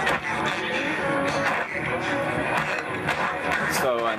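Music and a voice from an AM broadcast station heard through a Hammarlund SP-600 shortwave receiver's speaker.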